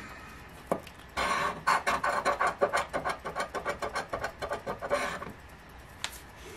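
A metal coin scratching the coating off a scratch-off lottery ticket on a wooden table, in rapid back-and-forth strokes, several a second. The strokes start after a single tap about a second in and stop about five seconds in.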